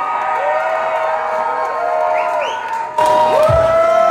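Concert crowd cheering and yelling, many drawn-out shouts overlapping; about three seconds in the sound suddenly gets louder, with a deep thud near the end.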